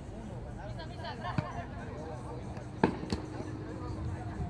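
Distant shouts of players across a football pitch, with sharp thuds of the football being kicked, about one and a half and three seconds in.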